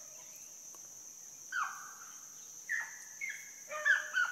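A pack of rabbit hounds giving mouth on a rabbit's trail: a few short bays, each falling at the end, come in from about a second and a half in and crowd together near the end, over a steady high insect drone.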